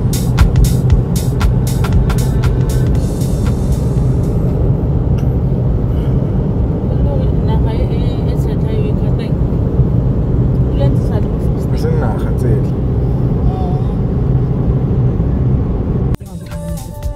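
Steady low rumble of a car driving on an open road, heard from inside the cabin. A woman talks over it in the middle, and music with a sharp beat plays for about the first four seconds.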